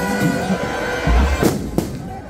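Loud dance music over a sound system, with a heavy bass beat. Two sharp cracks come close together near the end.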